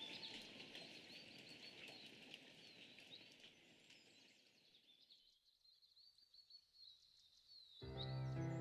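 Faint birdsong of many short, quick chirps from a nature-sound bed, over the fading tail of soft music that dies away about five seconds in. The music starts again just before the end.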